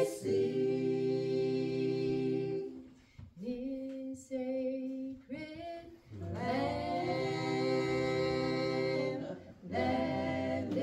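A small group of men and women singing a gospel hymn unaccompanied, holding long notes. About three seconds in, the low voices drop out and a softer, higher voice carries the line for a few seconds before the whole group comes back in.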